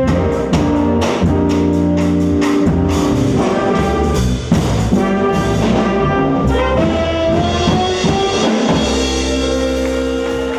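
A live jazz combo playing: grand piano, trumpet and saxophone over electric guitar and drum kit, with the horns holding long notes between drum hits. A long held chord comes in near the end.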